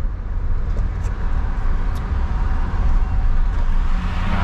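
Steady low rumble of engine and tyre noise inside a moving car's cabin, with a couple of faint ticks.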